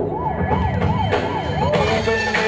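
A siren sound effect in a dance-routine music mix: a fast up-and-down wail, about three cycles a second, over the music's low end.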